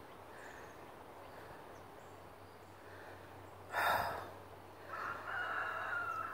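Quiet outdoor background with a short burst of noise about four seconds in, then a faint, drawn-out call from a distant bird near the end.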